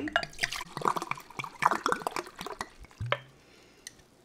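Red wine being poured, a splashing pour that dies away about three seconds in.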